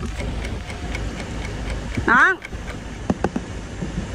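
Car engine idling with the air conditioning running: a steady low rumble heard from outside the locked car, with a couple of light clicks a little after three seconds in.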